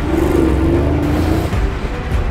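An SUV's engine as the car pulls away and drives off.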